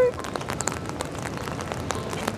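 Steady rain falling on wet pavement, an even hiss with many small sharp drop ticks.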